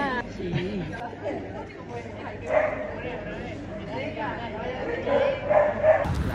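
Indistinct chatter of several people's voices talking.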